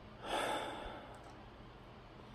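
A man's single heavy sigh, one breathy exhale lasting about a second, close to the microphone. It is a sigh of stress.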